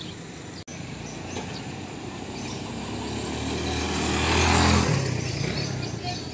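A small motorcycle engine passing close by, getting louder to a peak about four and a half seconds in, then cutting off abruptly.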